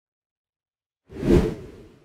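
A single whoosh transition sound effect accompanying an animated logo. It comes in about a second in, swells quickly and fades away.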